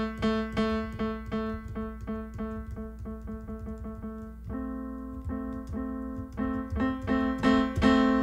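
Software piano (Pianoteq plugin) played from a computer keyboard: one note repeated about three times a second, getting softer as the MIDI velocity is stepped down. About halfway a slightly higher note takes over, repeated and getting louder as the velocity is raised again.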